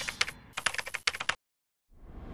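Keyboard-typing sound effect: a quick run of sharp key clicks that stops about one and a half seconds in, as on-screen text types itself out. A whoosh begins just at the end.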